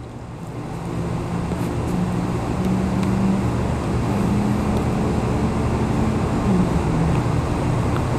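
Low, steady motor drone with a hum, swelling over the first second or two and then holding.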